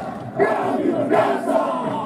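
A group of marine soldiers shouting a haka-style war chant together, many voices at once. There is a brief lull right at the start, and the shouting comes back about half a second in.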